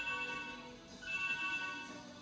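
An electronic ringing chime sounding twice, each ring about a second long, over faint background music.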